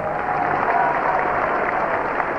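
Theatre audience applauding, a steady, even clapping.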